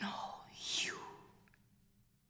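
A woman whispering: two breathy, unvoiced bursts within the first second, then dying away.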